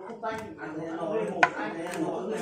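Heavy cleaver chopping through steamed rat meat and bone on a wooden chopping board, with one sharp chop about one and a half seconds in. People talk in the background.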